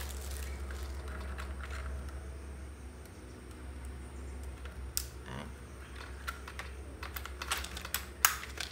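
Small plastic clicks and rattles as a battery and its wire connector are handled and fitted into the plastic pistol grip of a toy M416 gel blaster, with a sharper click about five seconds in and a quick run of clicks near the end.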